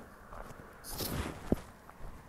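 Footsteps of a person walking, with a scuffing step about a second in and a sharp click half a second later.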